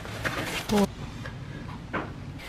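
A single short spoken "Oh" over a low, steady background rumble that fades out in the second half.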